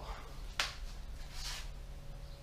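A plastic bottle of car polishing compound being handled: one sharp click about half a second in, then a short hiss about a second later.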